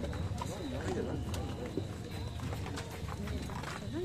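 A voice singing a slow, ornamented song, its pitch wavering up and down in long held notes, over a low murmur of crowd noise with a few faint knocks.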